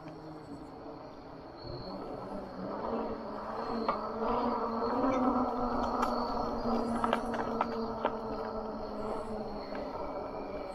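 Lectric XP 2.0 e-bike being ridden: a steady hum from the hub motor with tyre and wind noise, growing louder about two seconds in as the bike picks up speed, with a few scattered clicks and rattles.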